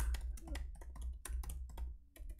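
Typing on a laptop keyboard: a quick, uneven run of key clicks.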